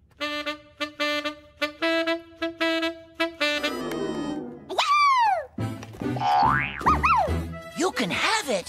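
Cartoon sound effects: a toy pitch pipe plays a quick run of short musical notes, then springy boing sounds swoop down and up in pitch.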